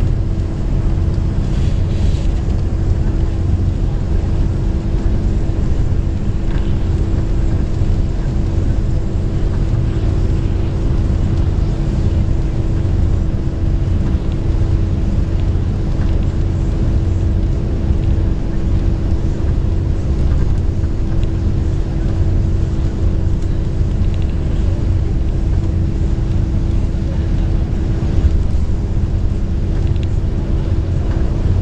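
Long-distance coach bus running steadily down a highway, heard from inside the cabin: an even low drone of engine and road noise with a constant hum, unchanging throughout.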